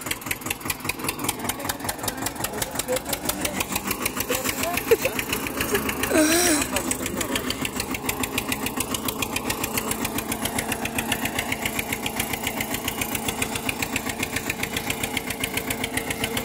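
Tractor engine running with a rapid, even knock while pulling a trolley loaded with sugarcane. A voice calls out briefly about six seconds in.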